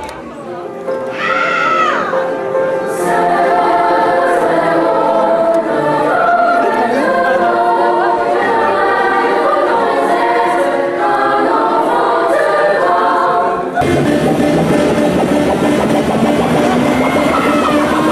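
Live roots-rock band in a breakdown: the bass and drums drop out, leaving voices singing over sparse accompaniment, then the full band comes back in about fourteen seconds in.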